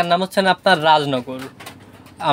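A man speaking Bengali, with domestic pigeons cooing around him in a small wooden loft.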